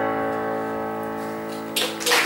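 The final chord of the song's accompaniment held and ringing out, slowly fading. Applause breaks out near the end.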